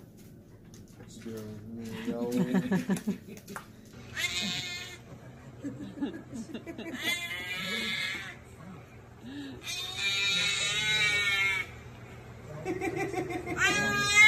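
A baby's high-pitched squeals, in four bursts about three seconds apart, after a lower voice about two seconds in.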